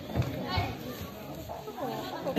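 Children's and spectators' voices shouting and calling out around a children's karate bout, with two dull thumps near the start, about a third of a second apart.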